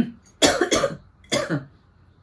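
A woman coughing three times, two quick coughs and then a third about half a second later.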